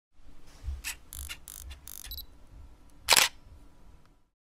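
Camera mechanism sounds: a handful of short whirring and clicking bursts, then one loud shutter click a little after three seconds in.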